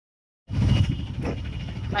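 Auto-rickshaw engine running with street noise and voices. The sound cuts in suddenly about half a second in.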